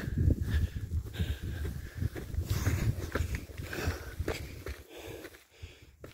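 A hiker scrambling up granite rock: footsteps and scuffs with heavy breathing. A low, fluttering rumble on the microphone dies down about halfway through.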